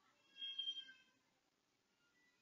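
A single short, faint, high-pitched call lasting about half a second, heard about a third of a second in.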